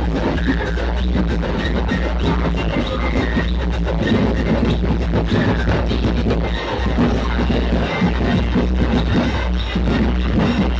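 Loud electronic dance remix music blasting from a DJ sound system, with a heavy, steady bass line.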